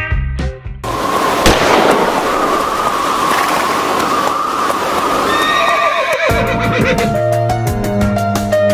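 Western film sound effects: a horse whinnying over a loud rushing noise, with a single sharp crack about a second and a half in. The whinny falls away near the end, and music starts up.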